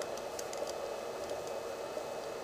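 HHO electrolyzer cell fizzing steadily as both sides produce hydrogen-oxygen gas by electrolysis, with a few faint ticks.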